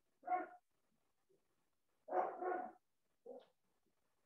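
A dog barking in short bursts: one bark, then a quick double bark about two seconds in, and a shorter bark near the end.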